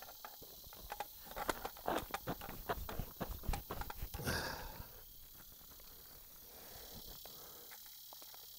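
A hand scraping and breaking loose dry slate, silt and clay from an earth bank: a quick run of crunches and small clatters for a few seconds, ending in a short gritty rush, then quieter.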